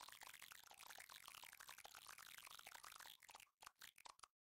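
Faint crackling, fizzing sound effect made of dense tiny clicks, breaking up into a few separate clicks near the end, accompanying a pixel-block logo animation.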